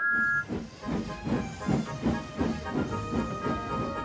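A two-tone steam whistle that ends about half a second in, then steam-locomotive chuffing at about four puffs a second, with background music.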